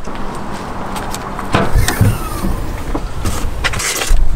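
A car boot being opened: sharp latch clicks about one and a half to two seconds in, then a short falling whine as the lid lifts.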